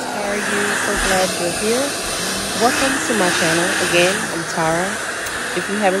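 Handheld hair dryer blowing steadily and loud, held close to damp locs set on flexi rods and perm rods to dry them; a woman's voice talks over it at intervals.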